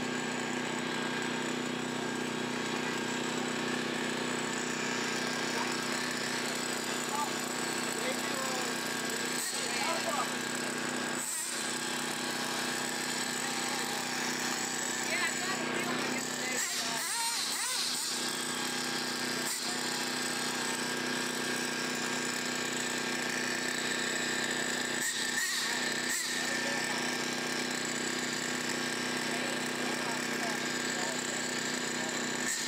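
A steady mechanical buzzing drone that runs unchanged throughout, with indistinct voices in the background.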